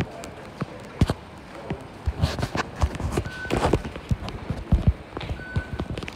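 Irregular footsteps and knocks of someone walking fast over a stone-tiled floor, with two short high electronic beeps, the first about three seconds in and the second near the end.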